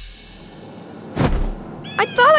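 Cartoon transformation music fading out at the start, then a short sound effect a little over a second in as the backpack appears.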